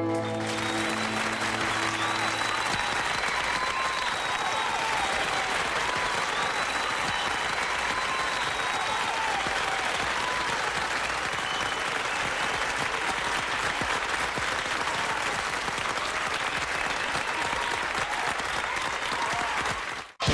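Audience applause rising as a carol ends, while the band's last held chord fades out over the first few seconds.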